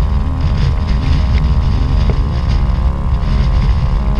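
Storm-force wind buffeting the microphone: a heavy, continuous low rumble.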